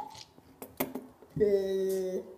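A few short clicks, then a boy's long, flat-pitched vocal groan of disgust about halfway through, as he tastes a jelly bean he hates.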